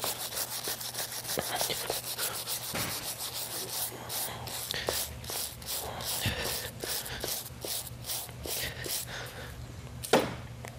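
Quick back-and-forth scrubbing strokes, several a second, over the sole and frog of a horse's hoof, rubbing off loose frog tags and dirt.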